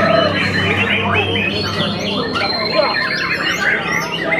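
White-rumped shamas (murai batu) singing: fast, varied chirps and whistled phrases that overlap one another, over a low murmur of voices.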